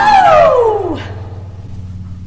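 A loud vocal whoop that slides down in pitch over about a second, with a low acoustic guitar chord ringing on beneath it.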